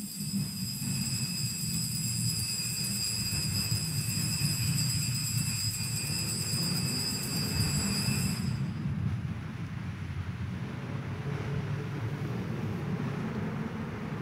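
Altar bells ringing continuously for about eight and a half seconds, then dying away, marking the elevation of the host at the consecration. A steady low rumble of room noise runs underneath throughout.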